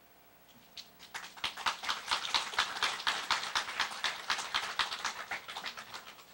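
Audience applauding with separate, distinct claps, starting about a second in and tapering off near the end.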